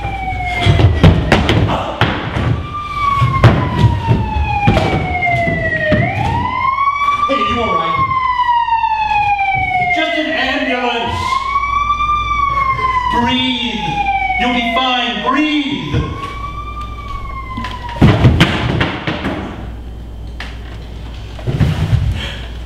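A police siren sound effect wailing, each cycle a slow fall in pitch followed by a quick rise, about every three seconds, then stopping around 16 seconds in. Thuds and scuffling on the stage floor come in the first few seconds, with one loud thud about 18 seconds in.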